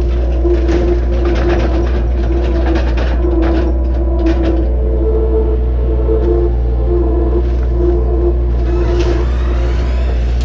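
Takeuchi TL130 compact track loader's diesel engine running hard under load, with a steady whine over the engine note, while its grapple bucket crushes and pushes camper debris into a dumpster with repeated cracking and splintering of wood.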